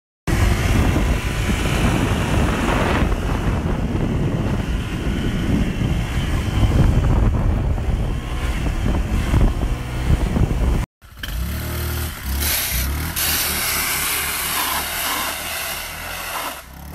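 Motorbike running while being ridden, with a heavy low rumble on the phone's microphone. It cuts off suddenly about eleven seconds in and gives way to a quieter stretch of motorbike running along a street.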